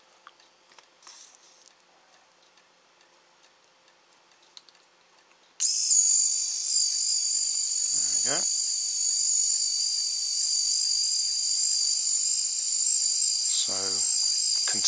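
Small RC servo's DC motor and gear train running continuously off a battery pack, a steady high-pitched whine that starts suddenly about five and a half seconds in: with its end stop removed and its control board bypassed, the servo now spins all the way round. Before that, only a few faint clicks as the wires are handled.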